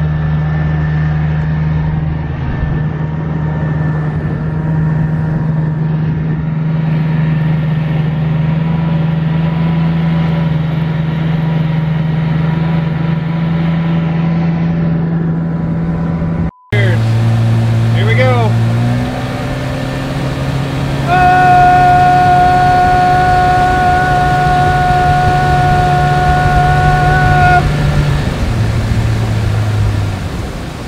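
A small boat's motor runs with a steady hum, heard from aboard the moving boat. After a sudden cut about halfway through, the hum returns, and a higher steady whine joins it for several seconds near the end.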